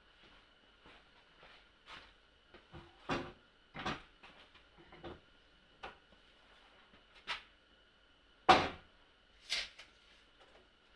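A long pine 4x4 post is set down and shifted along a wooden workbench. It knocks and thumps irregularly, about ten times, and the heaviest thump comes near the end. A faint steady high-pitched hum runs underneath.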